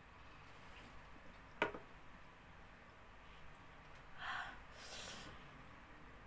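A woman breathing hard against the burn of super-hot chili chips: a single sharp knock about a second and a half in, then two loud, breathy huffs of breath a little past the middle.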